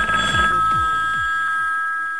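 A telephone ringing with one long, steady electronic two-tone ring. Under it, the song's bass beat fades out as a run of falling-pitch bass notes.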